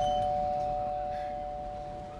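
Two-note ding-dong doorbell chime ringing on, its higher and lower tones sounding together and fading slowly.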